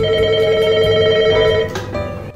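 Beetel corded desk telephone ringing, one steady ring that stops near the end as the handset is lifted.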